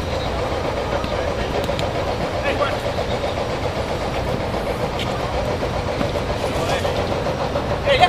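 Steady outdoor background rumble over a football pitch, with distant, indistinct shouts from the players.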